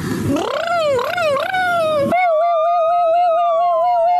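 Comic sound effects: a wavering, howl-like wail that slides up and down in pitch. It cuts off about two seconds in and is replaced by a steady warbling, siren-like tone with slow rising and falling glides.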